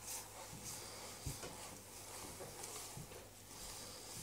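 Faint, soft squelching and rustling of hands kneading minced pig's offal and breadcrumb rusk together in an aluminium bowl, with one soft knock just over a second in.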